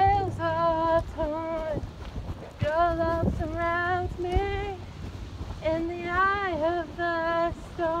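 A female voice singing a slow worship melody without accompaniment. She holds long notes with vibrato and slides between them.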